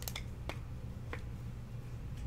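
Baseball cards and plastic card holders being handled on a desk mat: three short, sharp clicks, near the start, about half a second in and just after a second, over a low steady hum.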